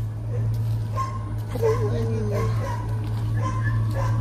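A dog whining and yipping faintly in short pitched calls, the clearest about halfway through, over a steady low hum.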